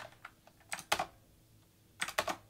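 Computer keyboard keystrokes: a few light taps, then two sharper key presses just before a second in, after which the typing pauses.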